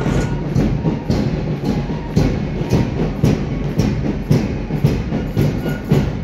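Marching drums beating a steady march rhythm, about two strokes a second.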